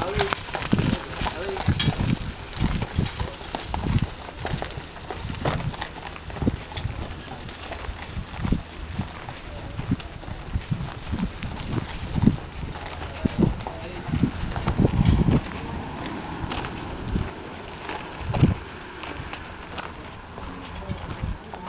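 Gypsy Vanner horse's hooves thudding and clopping irregularly, with voices in the background.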